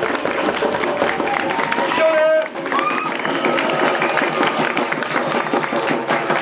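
A crowd clapping steadily, with voices calling out over the applause.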